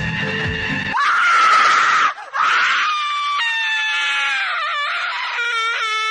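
Disco track with a steady beat for about a second, then the backing stops and a woman's voice screams in a long high cry. After a short break the cry goes on, sliding down in pitch, and ends in a wavering wail.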